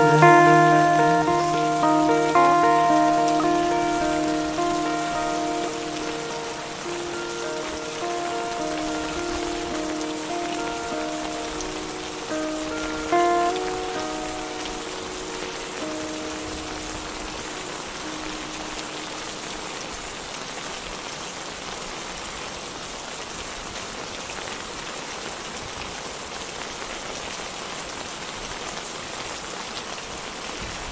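Steady rain falling, with the song's last sustained notes ringing out and slowly fading away over it during the first twenty seconds or so; after that only the rain remains.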